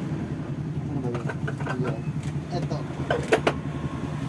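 Light clicks and knocks of things being handled close to the microphone, in two short clusters about a second in and past three seconds, over a steady low hum.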